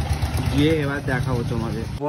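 A person talking over a steady low rumble; the voice comes in about half a second in.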